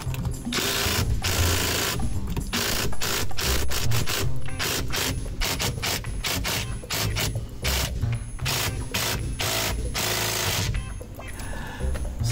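Ridgid cordless driver run in a series of short bursts, each from a fraction of a second to about a second long, driving screws at the steering wheel hub of a Ford F-150. The bursts stop about a second before the end.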